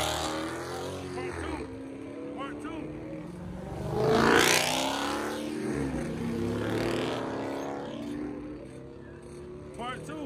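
Cars driving past with engines revving, the loudest a close pass by a Dodge Challenger about four seconds in, its engine note rising and then falling away. Bystanders' voices are heard briefly between passes.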